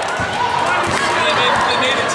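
Basketball bouncing a few times on a gymnasium's wooden floor, amid overlapping voices of players and spectators echoing in the hall.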